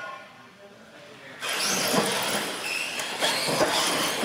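R/C monster trucks running on a concrete floor: after a quieter first second and a half, a sudden loud rush of motor and tyre noise sets in, with scattered knocks and clatters.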